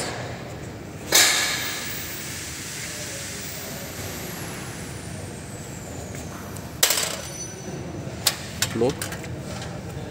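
Aluminium sliding door sash with multipoint locking: a loud metal knock with a ringing tail about a second in as the sash is slid against the frame, another sharp knock near seven seconds, then a few light clicks of the flush handle's lock being worked near the end.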